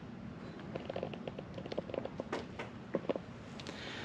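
Faint, scattered light ticks and shuffles over a quiet background, typical of someone's footsteps on a concrete floor as he moves around carrying the phone.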